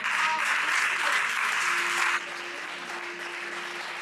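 Water poured from a pitcher into a plastic tub, a steady splashing stream that stops abruptly about two seconds in.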